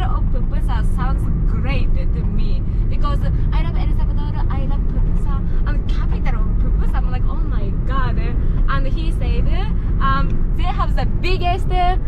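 Steady low road and engine rumble inside the cabin of a moving Nissan car, under people talking.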